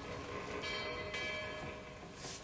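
Sustained bell-like ringing tones from the TV episode's soundtrack, with brief rushes of noise about midway.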